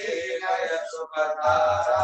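Voices chanting Sanskrit Vedic mantras in a sung, melodic recitation, with held notes and short breaks between phrases.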